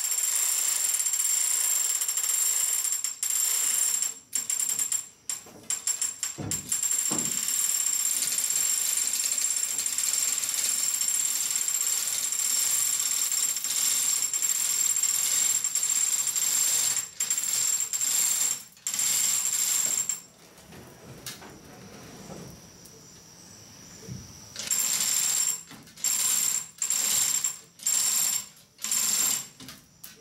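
Hand chain of a manual chain hoist rattling and jingling steadily as it is pulled hand over hand to lift a heavy load. It stops briefly a few times, falls quiet for about four seconds past the two-thirds mark, then comes back in short start-stop pulls near the end.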